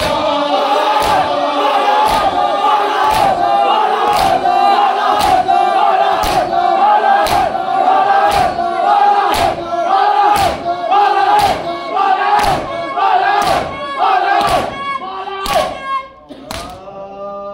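A large crowd of men chanting a Shia nauha lament in unison. Their hands strike their bare chests together in matam, sharp claps at a steady beat of about one a second. The chant and strokes stop abruptly at the end.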